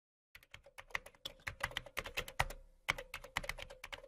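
Computer-keyboard typing sound effect: quick, irregular key clicks, about eight a second, with a short break about two and a half seconds in.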